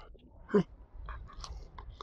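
Faint crunching and small mouth clicks of a dog chewing and taking a food treat from a hand, with one short voiced sound about half a second in.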